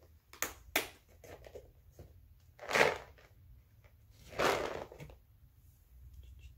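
Plastic cat-treat tub being handled to hand out treats: two sharp clicks in the first second, then two louder, short rustling rattles, the loudest about three seconds in and another about a second and a half later.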